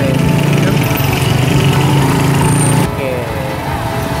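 Small motorcycle engine of a passenger tricycle running steadily, its sound dropping away about three seconds in.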